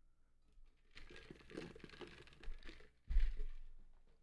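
Handling noise near the microphone: rustling and small clicks for a couple of seconds, then a loud dull thump about three seconds in that fades out.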